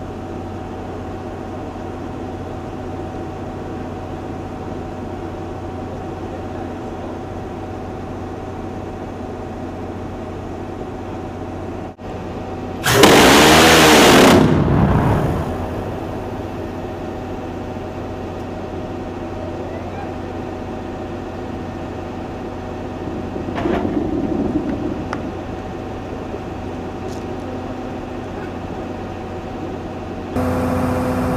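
Steady machinery hum of the C-RAM mount, broken about 13 seconds in by a burst of about a second and a half from its 20 mm six-barrel rotary cannon, a continuous buzz that dies away over the next two seconds. A smaller swell of noise comes about 24 seconds in.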